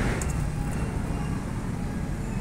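Steady low background rumble, with a faint tick or two of handling about a quarter of a second in.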